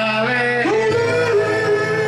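A man singing into a microphone over instrumental accompaniment: an ornamented vocal line that slides upward about halfway through and settles into a long held note.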